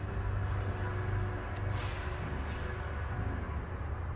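A 2018 Nissan Rogue's power liftgate motor running as the tailgate lowers, a steady, smooth hum that fades out near the end as the gate closes.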